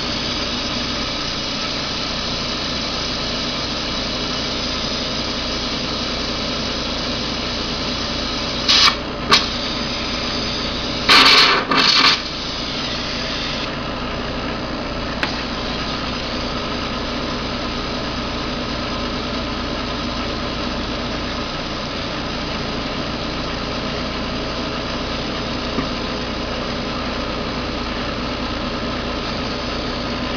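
Glass lathe running steadily under the hiss of a hand torch flame heating the end of a spinning Pyrex tube. A few short, loud bursts of noise come about nine seconds in and again around eleven to twelve seconds in.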